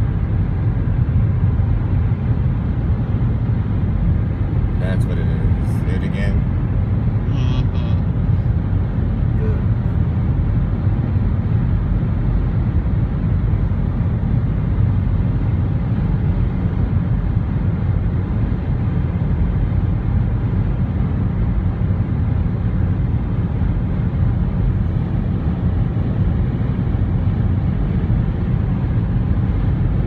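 Steady low road rumble inside a vehicle driving at highway speed, from tyres and engine, at an even level throughout. A few brief, higher sounds come through about five and eight seconds in.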